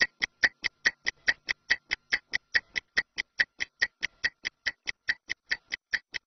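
Mechanical stopwatch ticking fast and evenly, about five ticks a second, timing a 30-second rest interval.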